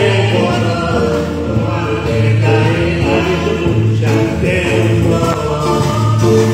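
Konkani tiatr song performed live on stage: voices singing long held notes over an instrumental backing with a steady bass line.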